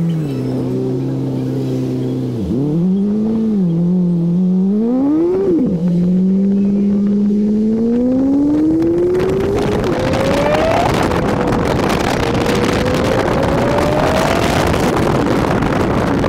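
Honda Civic Si engine accelerating through the gears: its pitch climbs and falls away at each shift, dropping sharply about five and a half seconds in, then rises steadily for several seconds. Wind and road noise builds from about nine seconds in as speed rises.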